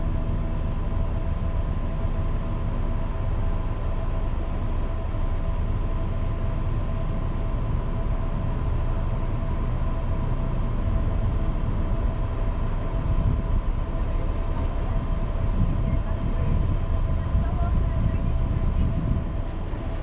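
Idling car engine: a steady low rumble with a faint steady hum on top, the car standing still.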